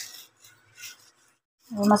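Wooden spatula scraping and stirring through dry-roasted whole spices on a plate: two soft, brief rustling scrapes, one at the start and one a little before a second in.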